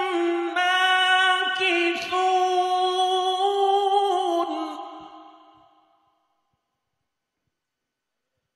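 A solo reciter chanting a Quran verse unaccompanied, in long held, ornamented notes of a single high voice. The phrase trails off about five seconds in.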